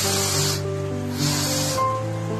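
Balloon gas hissing in two short spurts from a cylinder's filling nozzle into a rubber balloon. Background music with sustained melodic notes runs underneath.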